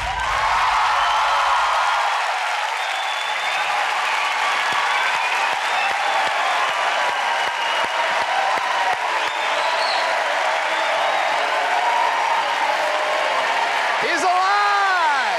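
Large studio audience applauding steadily, with some cheering voices over the clapping. The last bass of the stage music fades out in the first couple of seconds.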